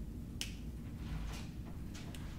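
A steady low room hum, with one sharp click about half a second in and a softer rustle about a second later.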